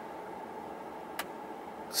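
Steady low hum inside a car cabin, with a single faint click a little past halfway.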